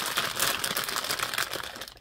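Clear plastic packaging bag crinkling as hands work a roll of chiffon ribbon out of it: a dense, crackly rustle that tails off near the end.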